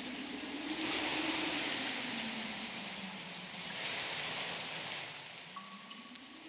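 Rain falling steadily, swelling twice and fading out near the end.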